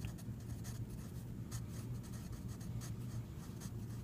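Wooden pencil writing on lined notebook paper: quiet, irregular scratchy strokes as the letters are formed, over a low steady hum.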